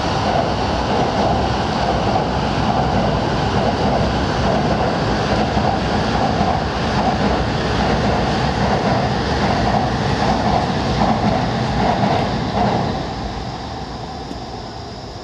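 Train crossing a steel truss railway bridge overhead, heard from below: a loud, steady run of wheels on rails and steelwork that fades away near the end.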